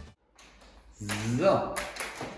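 Background music cuts off at the start, a moment of quiet room tone follows, and a man's voice comes in about a second later.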